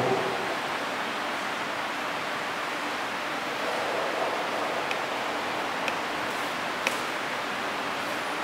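Steady hiss of room noise with no voices, with three faint clicks about a second apart past the middle.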